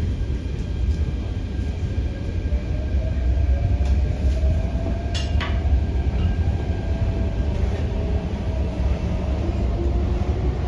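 Hyundai Rotem K-Train electric multiple unit heard from inside the passenger car while running: a loud, steady low rumble of wheels and running gear, with a motor whine that rises slowly in pitch as the train gathers speed. A sharp double click comes about five seconds in.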